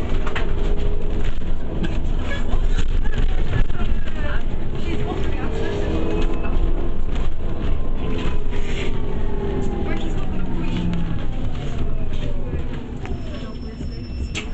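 Inside a moving bus: steady engine and road rumble with the body rattling, and passengers' voices in the background. Over the last few seconds a whine falls in pitch and the noise eases as the bus slows.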